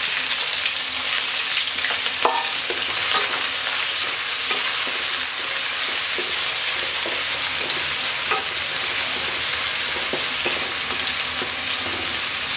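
Freshly added sliced red onions sizzling steadily in hot oil with cumin seeds in a wok. A wooden spatula stirs them, knocking lightly against the pan now and then.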